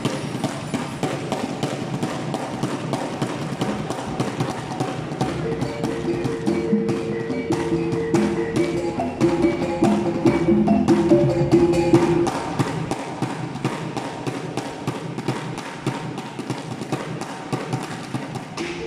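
Live gong ensemble music: ringing gong tones that come and go over a fast, steady clatter of percussion strokes.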